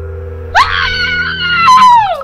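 A person's high-pitched scream begins about half a second in, sweeping up and holding for over a second before its pitch falls away at the end. It sits over a background music bed with a steady low drone.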